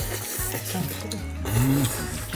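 Chopsticks stirring and lifting black-bean-sauce jajangmyeon noodles in a metal bowl, a wet mixing sound over background music.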